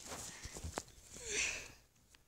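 Faint handling noise: a few light knocks in the first second, then a soft breathy hiss swelling and fading near the middle.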